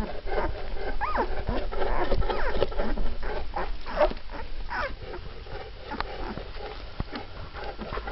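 Twelve-day-old Mastiff puppies squeaking and whimpering, several short squeals bending up and down in pitch in the first half, over soft rustling as they crawl on the blanket. Quieter after about five seconds.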